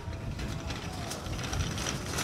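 Bicycle freewheel ratchet clicking rapidly as the bike coasts, over a low background rumble.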